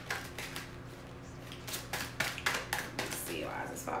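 A tarot deck being shuffled by hand: a quick run of sharp card snaps, about four or five a second, with a short lull about a second in.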